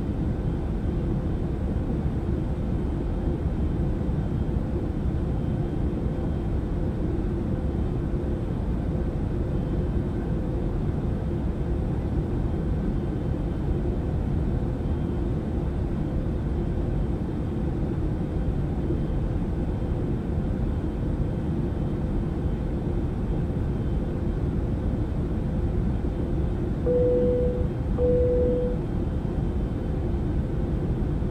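Steady low rumble of an airliner cabin in flight, engine and airflow noise with a faint steady hum under it. Near the end, two short tones sound one after the other.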